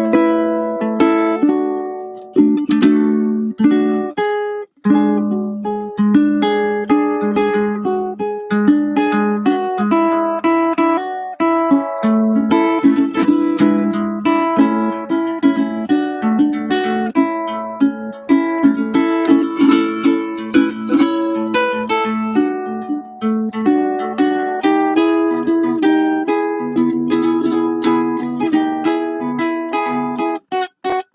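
Solo ukulele fingerpicked in a chord-melody arrangement, the melody carried on top with the chords beneath it, with a brief break about five seconds in.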